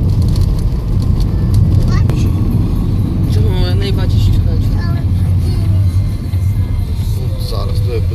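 Road noise inside a moving car: a steady low rumble of engine and tyres on a rough, patched asphalt road.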